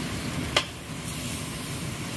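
Cabbage sizzling as it is stir-fried in a metal pot over a wood fire, with one sharp click about half a second in.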